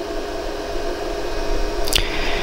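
Steady whirring hum of a running machine fan, with a short click near the end.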